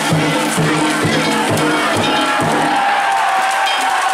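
Danjiri float's festival drums beating about twice a second, with metallic ringing and crowd noise over them. Halfway through, the drumming stops and a long, steady high note sounds.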